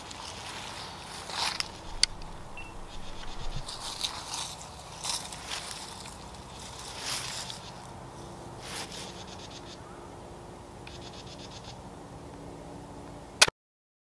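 Faint clicks and scrapes of a flintlock shotgun being handled and brought up to the shoulder, then near the end a single sharp, loud shot as the 20-gauge flintlock fires. The sound cuts off abruptly right after the shot.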